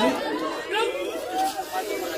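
Crowd chatter: many voices talking and calling out at once, none standing out as a single speaker.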